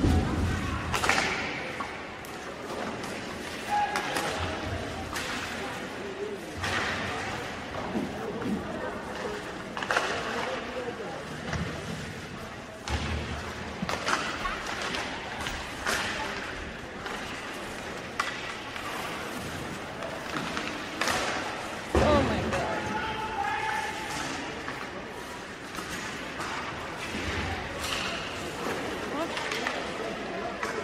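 Ice hockey play in an arena: sticks and puck clacking and players and puck thudding against the boards, with a louder thud about 22 seconds in, over indistinct spectator voices.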